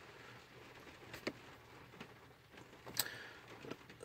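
Faint background noise with a few brief soft clicks, the clearest about a second in and about three seconds in.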